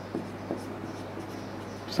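Marker pen writing on a whiteboard: faint strokes as a word is written out.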